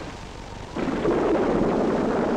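A thunder roll from a storm sound effect. It comes in suddenly about three quarters of a second in and goes on as a steady rumbling rush.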